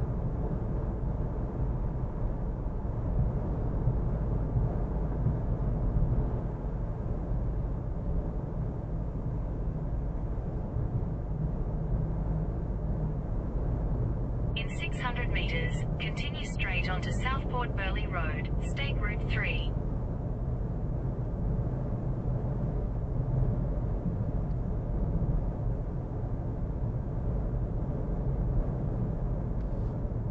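Steady road and engine noise of a car driving on a highway, heard from inside the car. About halfway through, a burst of quick high-pitched sounds lasts about five seconds.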